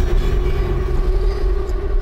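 Dramatic background score: a held, steady drone note over a deep rumble.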